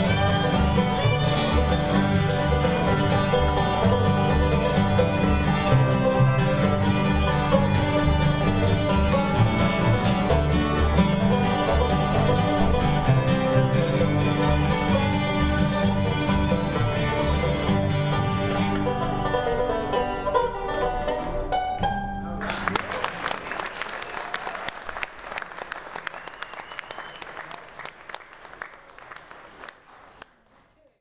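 Live bluegrass band of five-string banjo, fiddle, upright bass and two acoustic guitars playing a fast instrumental breakdown, which ends about three quarters of the way through. Audience applause follows and fades out.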